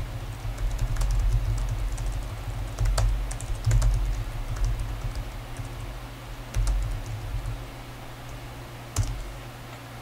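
Typing on a computer keyboard: a run of irregular key clicks as a line of text is typed, over a steady low hum.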